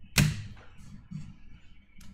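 A single sharp clack about a fifth of a second in, of a small object set down on the tabletop, followed by faint handling noise.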